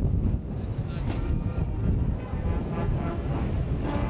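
Steady low rumble of outdoor air-base ambience, largely wind on the microphone, with faint voices in the background.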